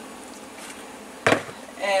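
A single short knock a little over a second in, over quiet room tone.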